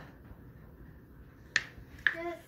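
Faint room noise with one sharp click about one and a half seconds in.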